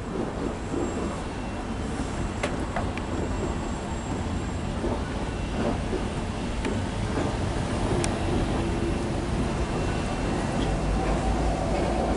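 Autorack freight train rolling away on the rails: a steady rumble of wheels on track with a few sharp clicks scattered through it.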